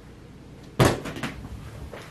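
A sudden loud thump, like something knocked or set down hard, followed by a few lighter knocks.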